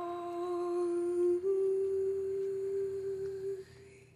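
A woman's voice humming a long held note that ends the song. It steps up a little in pitch halfway through and fades out shortly before the end.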